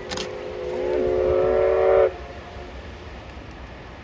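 Electric locomotive's horn blown once for about two seconds, several steady tones together, swelling louder and then cutting off sharply. A single click comes just before it.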